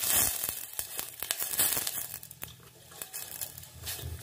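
Milk poured into a hot steel pot with a little oil in it, crackling and sizzling where it hits the hot metal; the crackle thins out over the first few seconds as the pot cools.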